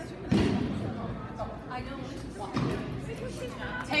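Dog-agility teeter board (seesaw) banging down onto the floor under a dog: two heavy thumps, the first about a third of a second in and louder, the second about two and a half seconds in.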